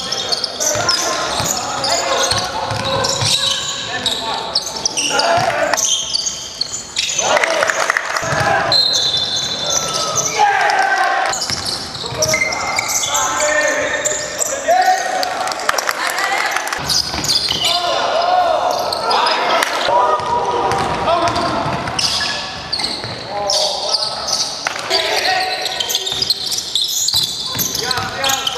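Basketball bouncing on the sports-hall floor as players dribble during a game, with voices calling out across the hall.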